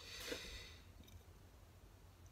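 Near silence: quiet room tone with a short, faint hiss in the first second.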